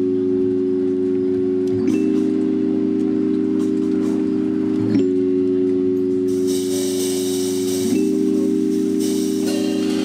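Live jazz band playing an instrumental intro: sustained keyboard chords that change every three seconds or so, with a cymbal wash from the drum kit coming in about six seconds in.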